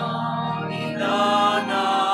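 Choir singing a slow hymn, voices holding long notes.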